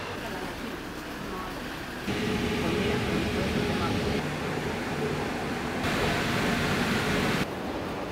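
Rushing rumble of a metro train in an underground station. It starts suddenly about two seconds in and cuts off abruptly a little before the end, over steady background noise.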